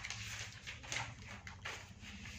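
Faint scratching of a 605 Master Qalam cut marker's chisel felt nib drawing strokes across lined paper, over a low steady hum.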